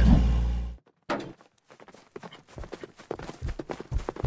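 A bus engine's low rumble cuts off sharply under a second in. After a short gap, a horse's hooves start clopping, faint at first and louder near the end.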